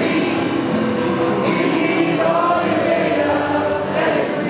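Live song performance: acoustic and electric guitar playing under several voices singing together.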